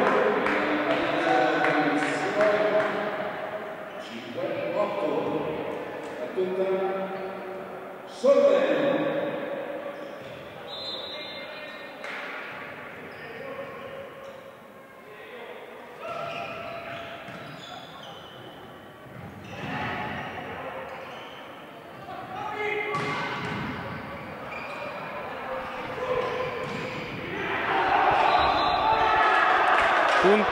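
Volleyball being served, hit and bouncing on a sports-hall floor, the impacts echoing around the large hall, among the shouts of players. One sharp hit stands out about eight seconds in, and the shouting gets louder near the end as a rally ends in a point.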